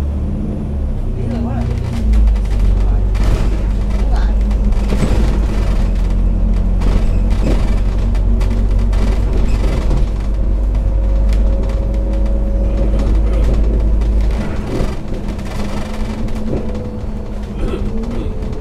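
Citybus double-decker's engine and road noise heard inside the bus while it drives: a steady drone with a deep rumble that swells about two seconds in and drops away at around fourteen seconds.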